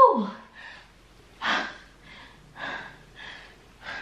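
Woman breathing hard after a minute of fast mountain climbers: a short sigh falling in pitch at the start, the loudest sound, then about four heavy breaths about a second apart as she recovers.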